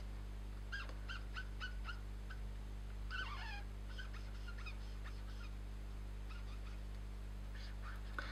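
Marker squeaking faintly on paper in short repeated strokes as it fills in tone, with a longer squeak about three seconds in, over a steady low hum.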